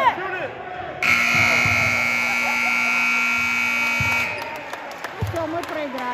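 Basketball scoreboard horn sounding the end of the game as the clock hits zero in the fourth period: one loud, steady buzz lasting about three seconds, starting about a second in. Crowd voices around it.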